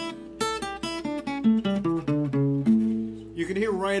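Acoustic guitar playing a quick run of single plucked notes, about four to five a second, ending on a longer held note near the end. The notes spell out a mixolydian pentatonic scale: the one, three, four, five and flat seven of the mixolydian mode.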